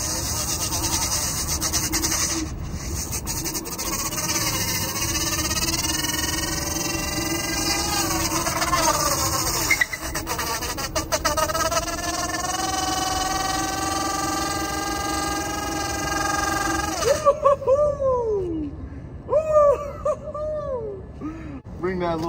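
Varla Eagle One Pro electric scooter doing a burnout: the rear tire spins on concrete with a whine that rises in pitch for several seconds, holds steady, then stops suddenly. A few short, loud squeaks follow as the wheel grips again.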